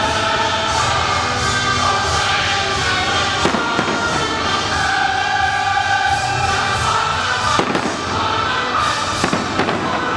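Aerial fireworks bursting over continuous music with voices, a few sharp bangs cutting through, about three and a half seconds in and a couple near the end.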